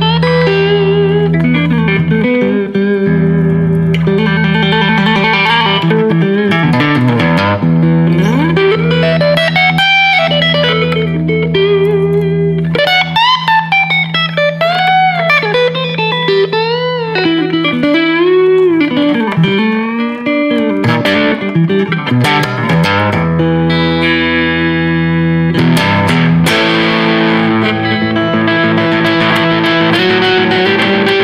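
Jasper Guitars Deja Vudoo electric guitar on its first pickup setting, played through an amp with a little distortion. A low note is held beneath a lead line of bent, gliding notes.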